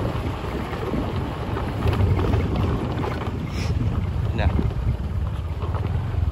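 Wind buffeting the phone's microphone outdoors: a steady, heavy low rumble with a rushing hiss over it, as the camera moves along an open lane.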